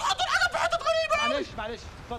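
A man's voice giving a rapid warbling "ya-ya-ya-ya" vocal trill, fastest about a second in.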